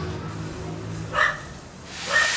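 A dog giving a single short bark about a second in, over a low steady hum.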